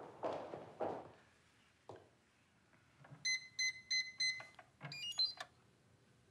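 Footsteps, then an electronic safe's keypad beeping five times in an even rhythm as a code is keyed in. A quick run of short electronic tones at changing pitches follows, the safe signalling that it is unlocking.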